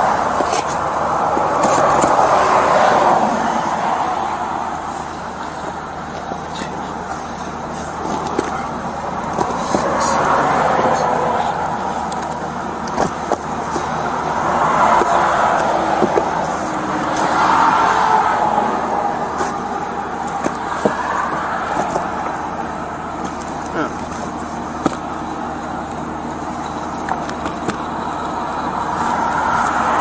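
Cars passing on the road, their noise swelling and fading every few seconds, with occasional short clicks and rustles of cardboard boxes being handled close by.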